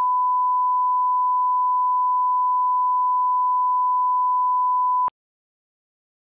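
Steady 1 kHz line-up reference tone, the test tone that runs with colour bars at the head of a broadcast programme tape. It cuts off suddenly about five seconds in.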